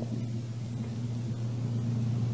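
Steady low hum with faint hiss: the background noise of an old lecture recording.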